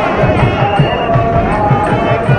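Mangala vaadyam procession music: a nadaswaram-type double-reed pipe playing sustained melody notes over a steady drum beat of about four strokes a second.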